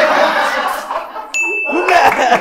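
A man laughing, then about one and a half seconds in a single high ding sound effect: one steady tone held for about half a second that cuts off sharply.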